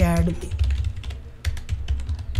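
Typing on a computer keyboard: a brisk, uneven run of key clicks.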